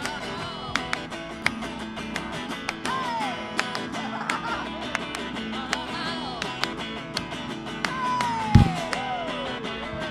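Harmony Rebel electric guitar strummed through a small tube amp, a reissue of the Harmony 8418 with a six-inch Jensen speaker, with hand claps and sharp clicks throughout. A voice sings a few long falling notes, and a loud bump lands about eight and a half seconds in.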